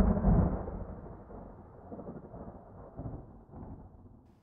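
Video transition sound effect: a deep, noisy rumble, loudest at the start, that fades away over about three and a half seconds.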